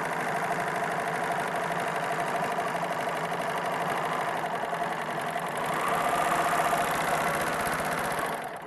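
Three-thread serger running steadily at speed as it stitches a rolled hem along a fabric edge, getting a little louder about six seconds in.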